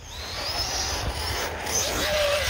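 Arrma Outcast 6S RC monster truck accelerating hard. The brushless electric motor's whine rises steadily in pitch over a loud rush of tyres on dirt and air noise.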